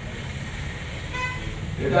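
A single short vehicle horn toot a little over a second in, over a steady low hum.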